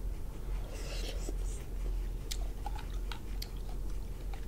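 Close-up eating sounds of someone chewing cooked lobster meat picked from the claw. A short breathy rush comes about a second in, then several small sharp clicks.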